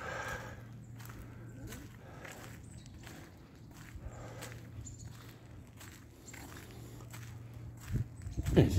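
Footsteps of a person walking on a paved path, roughly two steps a second, over a faint steady low hum.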